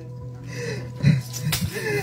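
Sustained background music tones under short vocal outbursts from a man into a microphone, heard over a PA, with a sharp smack about one and a half seconds in.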